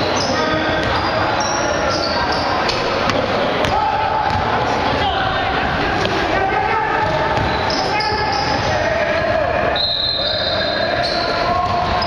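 Basketball being dribbled and played on a hardwood gym floor during a game, with players' voices calling out, all echoing in a large gym.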